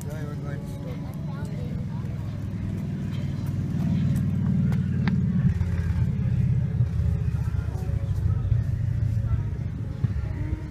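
A low rumble that grows louder from about four seconds in, with faint voices in the background.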